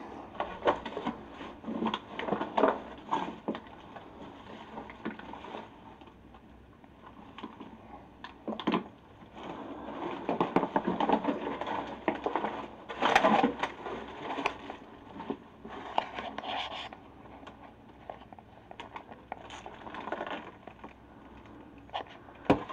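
Footsteps crunching and scraping over a floor littered with debris and broken glass, coming in irregular clusters with a few louder crunches.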